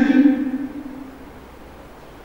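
A man's voice at a microphone drawing out the last word of a phrase, fading out about a second in, followed by a pause with only faint steady room noise.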